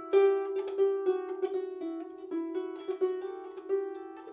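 Irish harp played by hand: a quick phrase of plucked notes that keeps returning to one repeated note, a treble ornament fingered two-three-two-one.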